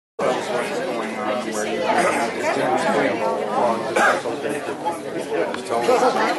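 Crowd chatter: many people in an audience talking among themselves at once, overlapping voices with no single speaker standing out. It cuts in suddenly just after the start.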